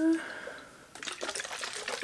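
A bottle of drink shaken by hand, the liquid sloshing with rapid rattling. It starts about a second in and mixes a powder into the drink.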